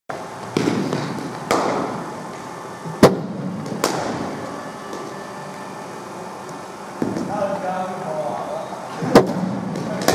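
A hard cricket ball striking the bat and hard surfaces in an indoor net hall: sharp, echoing cracks coming in three pairs a little under a second apart, the loudest about three seconds in. Voices talk briefly in the later part.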